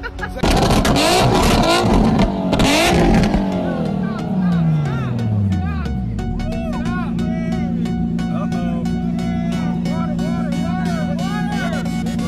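An old pickup truck's engine starting with a sudden, loud, harsh burst and revving, then its pitch falling steadily over a few seconds as it winds down. A steady low drone with voices follows.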